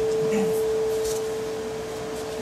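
A single acoustic guitar note ringing on alone and slowly fading, one clear steady tone.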